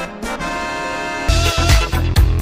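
Background music: a brass tune, then about a second and a half in a switch to a louder dance track with a heavy bass beat.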